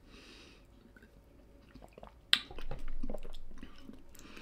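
A person drinking from a bottle: quiet swallowing and wet mouth and lip-smacking sounds, with a sharp click a little over two seconds in.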